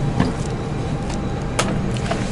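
Steady rushing air noise inside an airliner's cabin at the gate, with two sharp clicks, one just after the start and a louder one past halfway.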